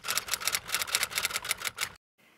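Typewriter key strikes used as a sound effect: a rapid, even run of sharp clacks, about eight a second, that cuts off suddenly near the end.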